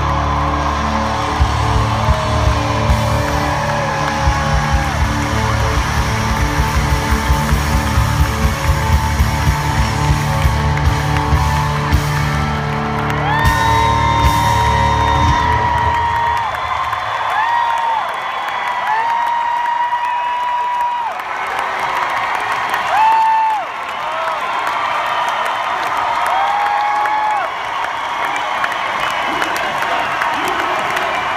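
A live rock band with drums and guitars plays the final bars of a song; the music stops about halfway through. An arena crowd then cheers with long, high whoops and yells.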